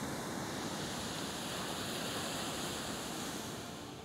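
Ocean surf breaking and washing up on a sandy beach, a steady rushing wash that eases off near the end.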